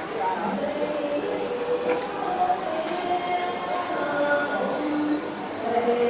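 Many overlapping voices of a large crowd talking at once in a reverberant hall, with two sharp clicks about two and three seconds in.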